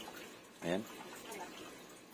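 A single short spoken syllable about two-thirds of a second in, over faint, even background noise.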